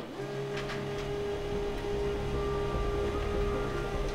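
HP LaserJet M14-M17 laser printer running as it prints a test page: a steady motor hum with a higher whine joining a little past halfway.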